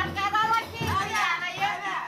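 Several high-pitched voices calling and chattering excitedly at once, over music with a low drum beat about twice a second.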